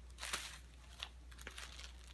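Faint rustling and crinkling as a piece of cotton eyelet fabric is moved and laid flat over tissue paper, with a few short soft crinkles near the start and again about one and one and a half seconds in.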